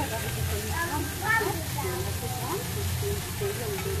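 Several people talking in the background over a steady sizzle of food cooking on a teppanyaki griddle.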